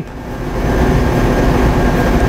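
Steady machinery noise: a low rumble under an even hiss, with a faint thin high tone.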